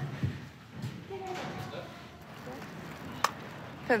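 Faint, indistinct background voices over low room noise, with a single sharp click a little past three seconds in.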